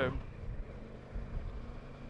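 Kawasaki Versys 650's parallel-twin engine running steadily at road speed, a low, even rumble mixed with wind and tyre noise.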